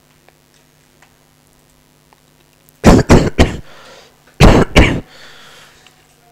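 A person coughing: a fit of three coughs about three seconds in, then two or three more coughs about a second later.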